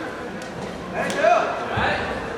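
Reverberant background noise of a large sports hall, with a short voice rising and falling about a second in.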